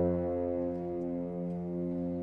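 Symphonic wind band holding a soft sustained chord, with low brass prominent.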